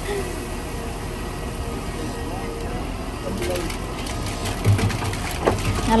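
Volvo wheel loader engine running while a bucketload of pumice pours into a pickup truck bed, a steady rushing noise.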